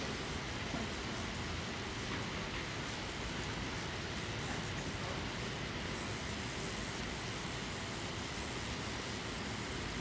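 Steady hiss of background room noise in a large hall, with no distinct sound standing out.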